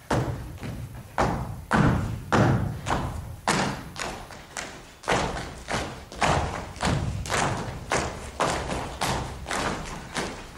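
Folk dancers' boots stamping on the stage floor in an uneven rhythm, about two heavy strikes a second, each ringing briefly.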